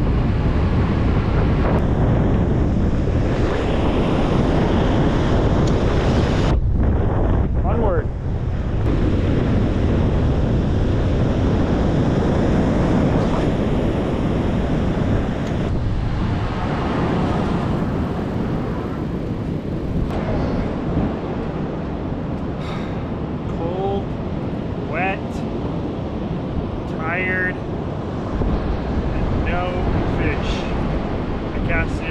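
Heavy wind buffeting the microphone of a camera mounted on a moving e-bike, with surf running behind it; the wind eases somewhat in the second half. Near the end come a few short, high calls that rise and fall in pitch.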